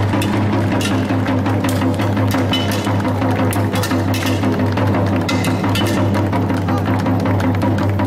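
A large bass drum (tabl) is beaten in an uneven rhythm with sharp knocking strokes, over a steady low drone, as music for a traditional sword-and-shield dance.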